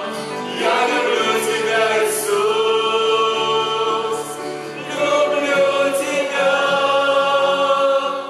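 Mixed vocal group of women and men singing a Russian-language worship song in harmony, holding long notes. There are two sustained phrases with a short break about halfway through.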